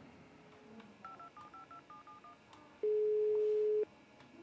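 Phone keypad tones as a number is dialled: about eight quick beeps in a row. Then a single one-second ringing tone at the caller's end, the ringback signal that the other phone is ringing. It is clearly louder than the beeps.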